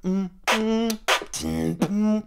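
Human beatboxing: a pattern of kick drums and BMG snares made together with a hum, giving about four short, pitched, buzzy hits in quick rhythm.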